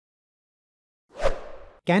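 Silence, then about a second in a short whoosh transition sound effect: a sudden burst of noise that fades out over about half a second, its top falling in pitch.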